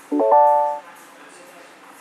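Short electronic chime from a MINI Clubman's cabin electronics: a quick rising run of three or four notes ending on one held tone, which fades out within the first second.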